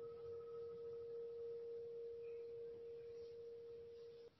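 A singing bowl ringing out faintly with one long steady tone; a fainter higher overtone dies away about three seconds in. It sounds the close of a meditation sit.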